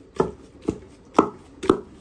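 Long wooden pestle pounding a soft yellow mash in a large wooden mortar: four dull thuds, about two a second.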